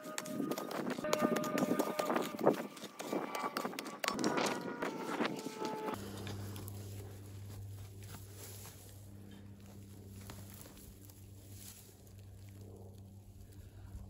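Small hand mattock chipping and scraping into hard, dry clay soil, a rapid run of clicks, scrapes and crumbling dirt with brief metallic rings. About six seconds in it stops abruptly, leaving a quieter low steady hum with faint rustling.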